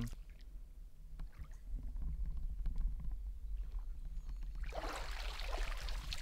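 Shallow pond water lapping and trickling quietly as hands grope along the bottom, then a burst of splashing near the end as the hands lunge and grab a crucian carp.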